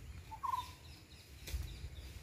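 A brief bird call, one short quavering note about half a second in, with faint higher chirps after it, over a low rumble; a single click comes at about a second and a half.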